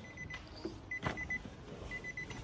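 A 2023 Nissan Qashqai's warning chime sounding with the driver's door open: faint, quick, high beeps in short groups, with a faint click about a second in.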